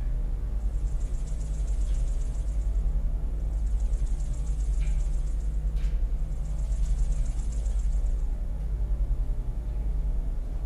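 A steady low rumble, with a faint high pulsing buzz that comes and goes three times, each time for about a second and a half, and two faint clicks near the middle.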